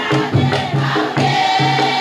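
A group sings a maoulida chengué, a Mahorais devotional chant, in chorus over percussion that keeps a steady beat of about two strokes a second.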